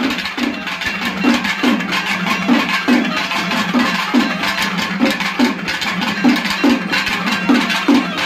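Live traditional Tamil temple-festival music: drums beating a fast, steady rhythm of about two and a half strokes a second over a sustained pipe drone.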